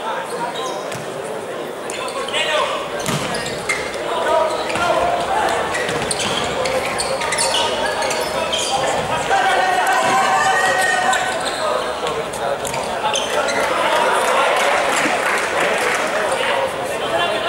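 A futsal ball being kicked and bouncing on a hard wooden court, sharp knocks that ring around a large sports hall, with players' shouts and voices echoing throughout.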